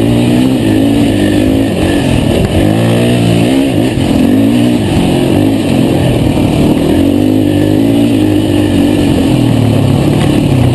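450cc four-stroke race quad's engine heard onboard, loud and constant, its pitch rising and falling as the throttle is worked over a dirt trail. The pitch drops about two and a half seconds in and again near eight seconds, then climbs each time.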